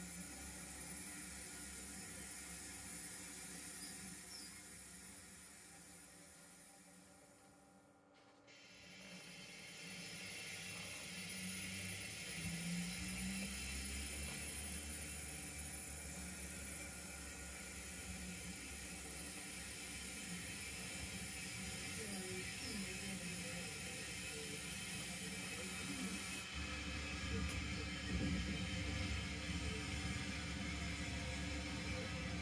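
O gauge model locomotive running on the layout's track, a steady hum of motor and wheels. It fades away to almost nothing about eight seconds in, then comes back up and holds steady.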